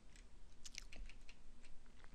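Faint computer keyboard keystrokes: a scattering of light, irregular key clicks as a command is typed and edited.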